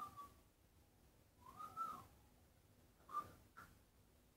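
Faint soft whistling: a few short notes, the first sliding down, the second rising and then falling, and two brief ones near the end.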